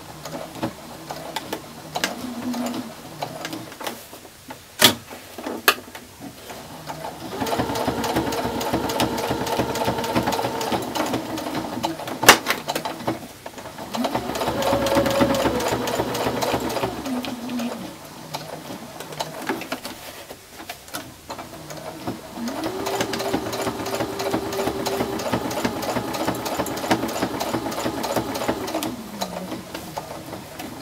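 Electric sewing machine stitching a quilt binding down in the ditch, in three runs that each speed up and then slow to a stop. A few sharp clicks fall in the pauses between runs.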